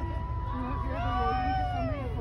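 A person's drawn-out call, rising then falling in pitch for about a second from about a second in, over low background voices and rumble. Just before it, a horn's steady note cuts off at the start.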